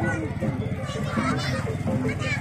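A crowd of children chattering and calling out as they walk, over a steady low background hum.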